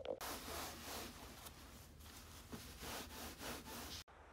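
Faint rustling and rubbing sounds, soft and uneven.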